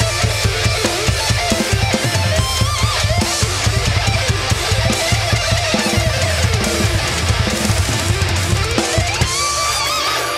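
Acoustic drum kit played hard to a heavy metal backing track with distorted guitars: fast bass drum beats under cymbals. Just before the end the drums drop out while a guitar line slides upward.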